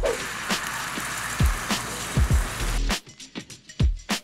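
Oil sizzling as oyster omelette fries in a hot pan, under background music with a regular beat; the sizzle cuts off sharply about three seconds in.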